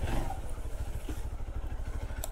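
Motorcycle engine running at low revs, a steady, evenly pulsing low putter as the bike rolls slowly.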